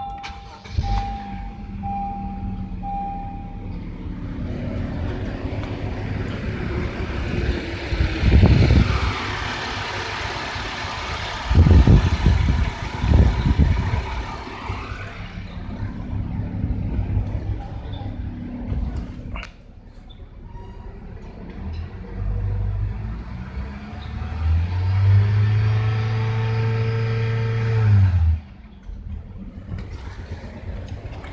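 Honda car engine started about a second in and run, the revs rising and falling, with a few loud low thumps in the middle. Near the end the engine is held at a raised speed for several seconds, then drops back sharply to idle. This is the kind of engine run used for a battery analyser's starting and charging-system test.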